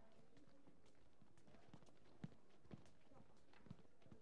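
Faint footsteps of several children walking across a wooden stage floor, with a few soft knocks about halfway through and near the end.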